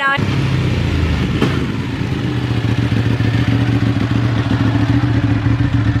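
A vehicle engine running steadily, loud and even in pitch, cutting in abruptly at the start.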